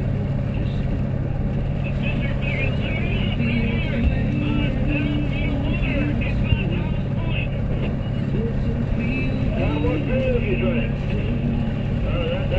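Twin outboard motors on a fishing catamaran running steadily underway, a constant low drone.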